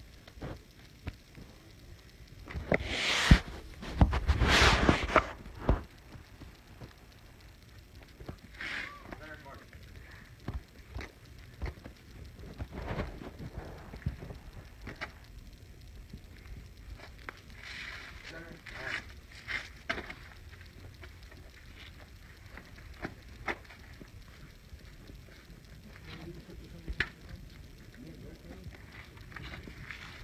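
Wind buffeting a phone's microphone outdoors, with two loud gusts about three and four and a half seconds in, then a low rumble with scattered crackles and faint distant voices.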